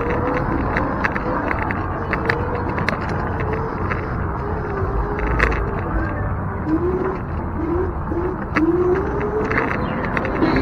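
Electric scooter's motor whining, its pitch holding steady and then rising in several short glides as the speed changes, over a steady rush of wind and path noise, with a few sharp clicks.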